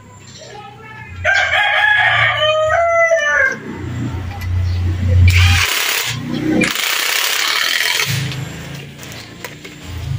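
A rooster crows about a second in. Later a cordless impact wrench runs in two bursts, a short one and then one of about a second and a half, on the top nut of a coilover strut.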